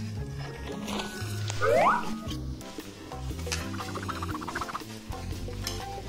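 Background music with a steady, stepping bass line. About a second and a half in, a bright rising swoop stands out as the loudest sound.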